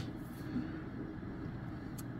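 Low, steady hum of running computers and room noise, with a sharp mouse click at the start and another at the very end.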